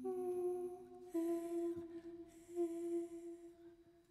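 A female voice humming long held notes: one note for about a second, then a slightly lower note held until it fades away near the end.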